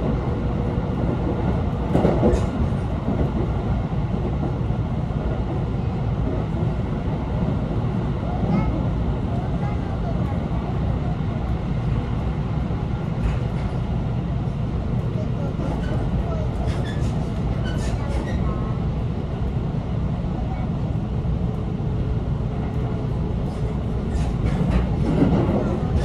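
JR Tokaido Line electric train running at speed, heard from inside the car: a steady rumble of wheels on the rails, swelling briefly about two seconds in.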